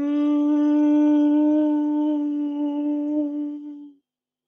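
A man humming one long held note at a steady pitch, which wavers a little in loudness and dies away near the end.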